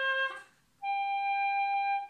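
Hulusi (Chinese gourd flute) playing long held notes: one note ends just after the start with a brief dip in pitch, then a higher long note starts just under a second in and is held steady. These are slow long tones demonstrating where vibrato can be added.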